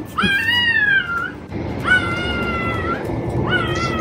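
Newborn puppies crying while being handled: three drawn-out high-pitched cries, the first rising then falling, the second held steady, the third starting near the end.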